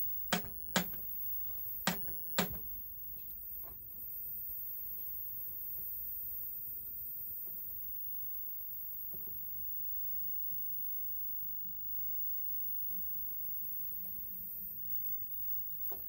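A 1970s colour CRT television (RBM A823 chassis) running after its power-supply repair: a few sharp clicks in the first couple of seconds, then a faint steady hum, with the thin high-pitched whistle of the line output stage above it.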